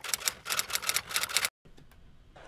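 Typewriter sound effect: a rapid, even run of key clacks, about eight a second, that cuts off suddenly about a second and a half in, leaving faint room tone.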